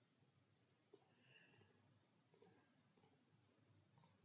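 Near silence with a few faint computer mouse clicks, about five spread over the seconds, as text is selected and copied on screen.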